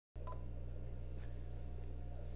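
Steady low electrical hum in the recording, with a brief faint beep just after the start.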